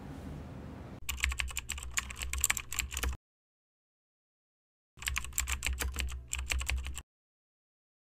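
Computer keyboard typing sound effect: two bursts of rapid key clicks about two seconds each, with dead silence between them.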